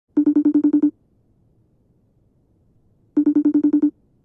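Phone ringtone: an electronic trilling ring, two rings about three seconds apart, each a quick run of about ten pulses a second lasting under a second.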